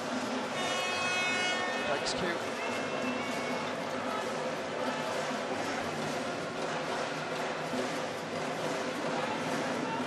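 Steady arena crowd noise, a murmur of many voices in a large hall. A high-pitched tone sounds for about a second just after the start, and a single sharp knock comes about two seconds in.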